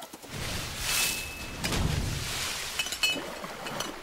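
Cartoon whoosh and rushing sound effects: a hiss about a second in, then a low rumble swelling around two seconds in, with a few light clinks near the end.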